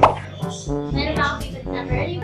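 A short pop sound effect right at the start, then background music with a repeating bass line.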